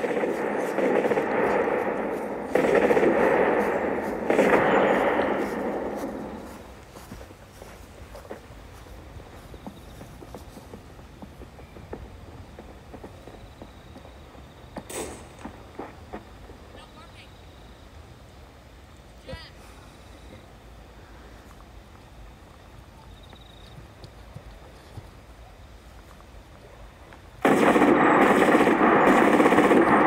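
Machine-gun fire in long, sustained bursts. A loud burst runs through roughly the first six seconds. Then comes a lull with only a few faint sharp cracks, and another loud burst starts suddenly near the end.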